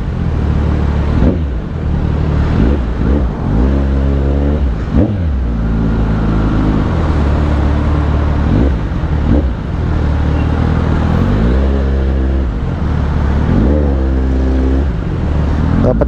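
Kawasaki Z900 inline-four with an aftermarket exhaust, idling low and revved up briefly several times as it creeps through traffic; each rev climbs and drops back quickly.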